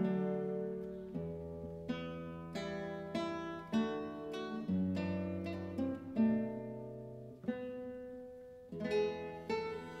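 Nylon-string classical guitar playing a slow passage of plucked chords and notes, about a dozen in all, each struck and left to ring and fade before the next.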